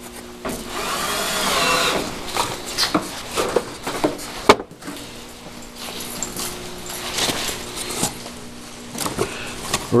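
Faint, indistinct voices with scattered clicks and knocks over a steady low hum; one sharp click about four and a half seconds in.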